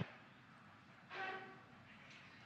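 Faint hiss of a mission communications audio feed, with one brief pitched tone about a second in that lasts about half a second and fades.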